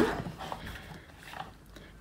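Fiskars sliding-blade paper trimmer cutting through watercolour cardstock: a short rasp of the blade right at the start that fades within about half a second. It is followed by faint rustles of the card being handled.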